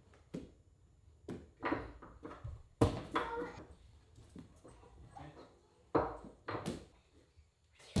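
A small child's bare feet thumping on rubber gym flooring and foam mats in a series of jumps, unevenly spaced. The loudest landing comes about three seconds in.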